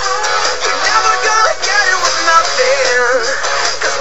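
A recorded pop-rock song playing with a steady bass line and a sung lead melody, with two girls singing along.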